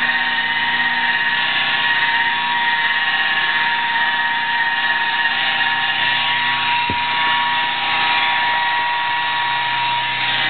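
Electric rotary polisher running steadily with a high whine, its foam pad buffing a paint-protection coat onto a car door panel. One brief knock about seven seconds in.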